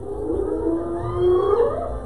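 An animal's long call, held at one pitch and then rising about a second and a half in before it fades.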